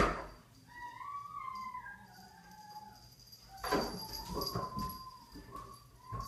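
A dog whining: a sharp knock at the start, then a long, wavering high whine, some scuffling knocks, and a second, steadier whine near the end.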